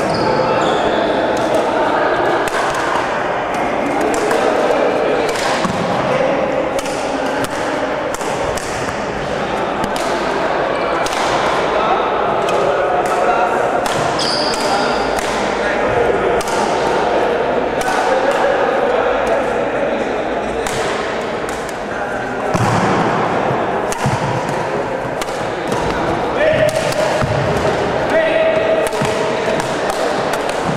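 Badminton being played in a large sports hall: repeated sharp racket hits on the shuttlecock and thuds of players' shoes on the wooden court, over steady background chatter of onlookers.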